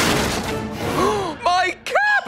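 Cartoon crash sound effect: a sudden impact, then about a second of crashing, crumbling debris noise. About a second in a character cries out, then screams near the end, over the background score.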